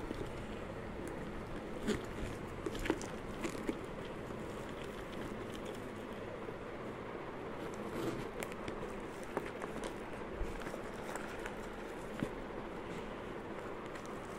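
Light clicks and brief rustles from a bicycle frame bag being handled, its phone-pouch flap lifted and moved, scattered over a steady background hiss.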